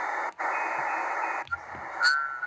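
Shortwave static hiss from a portable receiver in single-sideband mode as it is stepped up in frequency, with no signal yet tuned in. The hiss cuts out briefly twice as the frequency steps, and a faint steady high whistle sits in it midway.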